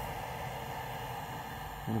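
Steady hum and whir of the Ender 3's cooling fans running while the printer sits preheated, with no other events.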